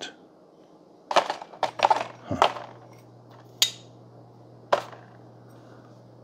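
Stainless steel espresso filter baskets clinking against each other and being set into a plastic storage tray: a run of clicks and clinks in the first couple of seconds, then two single sharp clicks a little over a second apart. A faint steady low hum sits underneath.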